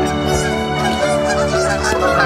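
A flock of Canada geese honking repeatedly as they take off and fly overhead, the calls coming thicker in the second half. Background music with long held notes plays underneath.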